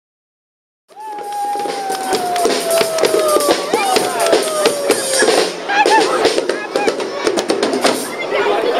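Live band music with a drum kit, starting abruptly about a second in. A long held note slides slowly down in pitch twice over the busy drumming.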